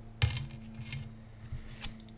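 Round oracle cards being handled on a wooden tabletop: a sharp tap about a quarter of a second in as a card is set down, then a few softer clicks and rubs.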